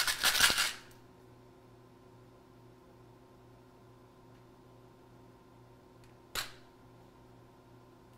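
Quiet room tone with a steady faint electrical hum, opening with a short burst of breathy noise and broken once by a single sharp click about six seconds in.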